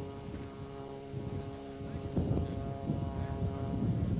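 Wind buffeting a camcorder microphone, in gusts that grow stronger about halfway through, over a steady droning hum.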